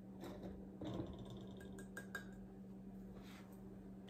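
Flour poured from a measuring cup into a metal flour sifter: a faint soft rustle with a few light taps, over a steady low hum.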